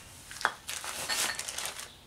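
Workshop handling sounds: one light clink about half a second in, then a second or so of rustling and scraping as small parts and a jar are moved about on the metal bench plate.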